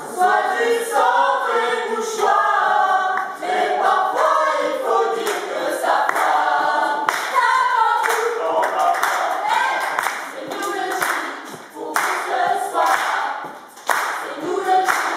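A group of voices singing a team anthem together a cappella, with no instruments. From about halfway through, sharp rhythmic claps come in under the singing, roughly one or two a second.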